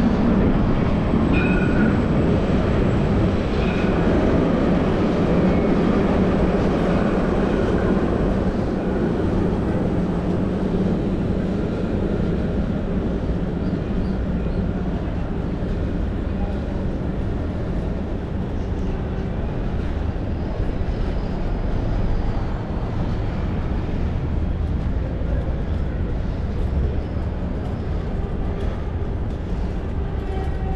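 Jerusalem Light Rail tram running past, a steady rumble that is louder in the first several seconds and then eases off.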